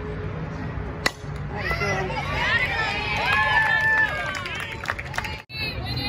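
A softball bat hitting a pitched ball with one sharp crack about a second in, followed by several high voices cheering and yelling over each other for about three seconds.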